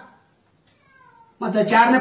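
A man talking loudly in a monologue, resuming after a pause of about a second. In the pause a faint, short cry with a falling pitch is heard just before his voice returns.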